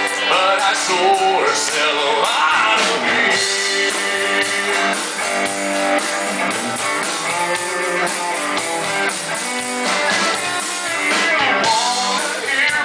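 Live country-rock band of acoustic and electric guitars, bass guitar and drum kit playing loudly, mostly an instrumental passage of the song.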